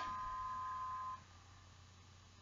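A steady electronic beep tone at two close pitches, cutting off suddenly just over a second in, followed by near silence.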